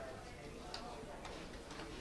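Faint clicks of billiard balls striking each other as they roll after a shot, over the quiet hush of the hall.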